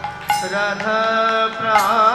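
Devotional kirtan: a male voice singing a melodic line over sustained harmonium chords, with sharp percussion strikes. The music dips briefly at the start, then comes back in.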